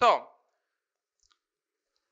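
A man's voice says one short word with falling pitch, then near silence.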